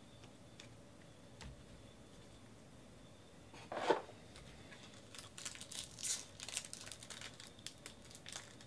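A short rustle about four seconds in, then the crackling of a Topps Chrome trading card pack's foil wrapper being handled and torn open. The first few seconds are nearly quiet.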